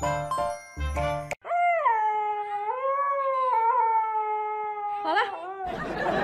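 Chiming background music cuts off about a second in; then a puppy gives one long, wavering howl-like whine lasting about four seconds. Near the end a hair dryer starts blowing.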